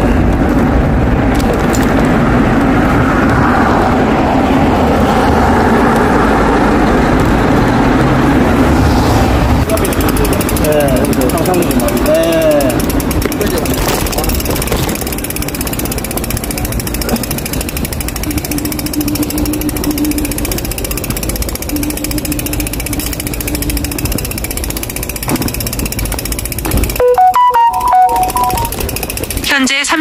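Wind and rolling noise from a bicycle being ridden along a town street, loudest in the first ten seconds. A short chime of a few clear tones comes near the end.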